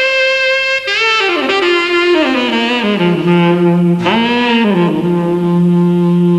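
Saxophone playing a jazz phrase: it swoops up into a long held note, then falls step by step to a long low note. About four seconds in it bends briefly up and back down to that low note.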